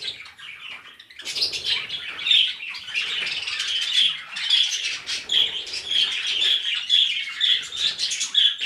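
A flock of budgerigars chattering: a dense, continuous run of short chirps and warbles, faint at first and fuller from about a second and a half in.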